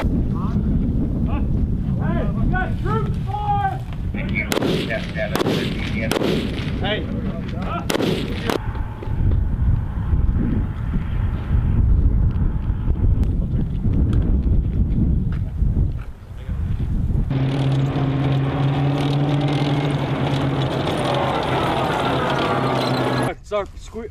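Live-fire gunfire from rifles and machine guns: sharp shots over a continuous low rumble, with shouting in the first several seconds. In the last several seconds a steady engine drone takes over.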